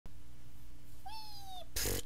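A single short high-pitched call about a second in, falling slightly in pitch, then a brief loud burst of noise near the end, over a steady low hum.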